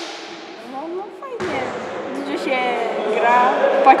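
Voices in a large, echoing hall during volleyball training, with a sudden thud about a second and a half in and a sharp smack just before the end.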